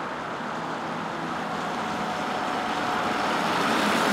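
A car driving toward the listener on a wet road, the hiss of its tyres on the wet asphalt growing steadily louder.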